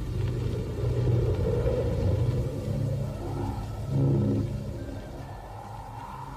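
A low, steady rumbling drone, with a faint higher hum swelling in and out around the middle.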